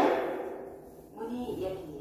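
Inside a Hyundai elevator car: a sudden sound right at the start that fades over about a second, then a brief voice, most likely the elevator's recorded floor announcement.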